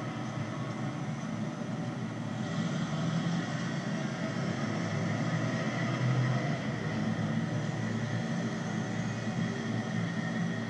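Steady rumble of city street traffic at a busy crossing.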